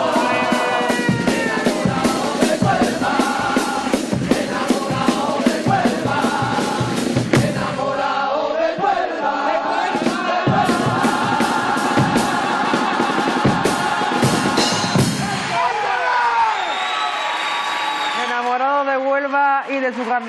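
Carnival murga chorus singing in harmony to Spanish guitars and a steady drum beat; the beat drops out about eight seconds in while the voices carry on into long held notes. Near the end the sound breaks into shifting voices, with crowd cheering from the theatre audience.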